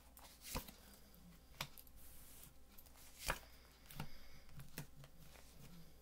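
A deck of tarot cards shuffled by hand: quiet rustling with a handful of short, sharp card snaps at irregular moments, the loudest about three seconds in.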